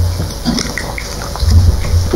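Noises close to a pulpit microphone: a low thud near the start and more low thuds from about one and a half seconds in, with small clicks between.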